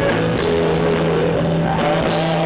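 Live rock band playing: electric guitars and drums over a held bass note, with a lead guitar line bending in pitch.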